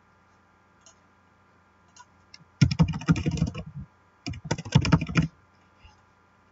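Typing on a computer keyboard: two quick bursts of keystrokes, the second starting about half a second after the first ends, as two short words are entered. A few single faint clicks come before.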